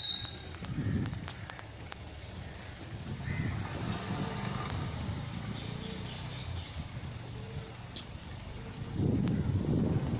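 Low, steady rumble of a slowly moving vehicle, which gets louder near the end. A brief high beep sounds at the very start.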